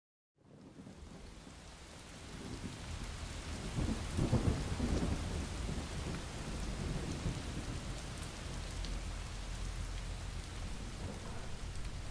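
Steady rain fading in from silence, with a low rumble of thunder swelling about four seconds in.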